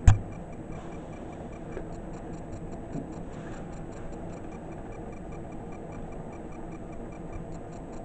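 Rapid, even ticking over a low steady hiss, with a single thump right at the start.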